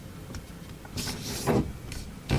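Origami paper rustling and sliding under the hands on a tabletop as a fold is made and creased. The loudest swish starts about a second in and peaks around a second and a half.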